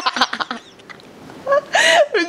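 A woman's high-pitched laughter in short, gasping bursts, then a loud pitched cry near the end.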